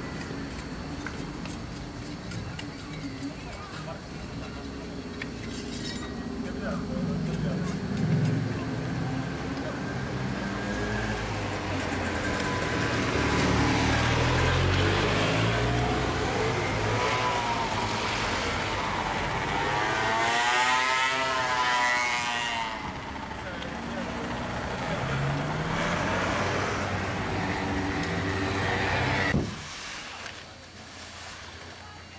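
Street traffic with motor vehicle engines running close by; a motorbike passes near, its engine rising and falling in pitch from about halfway through, and the noise cuts off abruptly just before the end.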